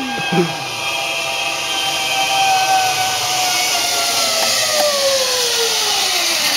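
Zip-line trolley pulleys running along a steel cable with a steady whine over a hiss. The pitch sinks gradually through the second half as the rider travels away down the line.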